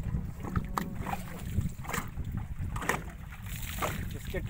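Strong wind buffeting the microphone, a constant choppy low rumble, with a few short sharp ticks about a second apart.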